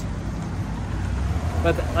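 Steady low rumble of city street traffic, with a man's voice starting near the end.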